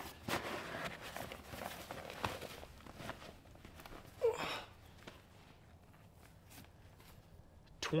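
Fabric bag rustling and being handled as a heavy electric motor is packed into it and lifted by its straps, with footsteps. A brief voice sound comes about four seconds in; after that it is quieter, with a few light clicks.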